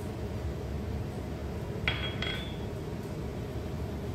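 A small ceramic bowl clinks twice against a hard surface, two short ringing clicks about a third of a second apart near the middle, over a faint steady background hum.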